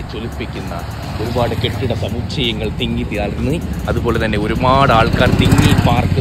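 Voices talking over the low rumble of street traffic, with a motor vehicle getting louder as it passes close near the end.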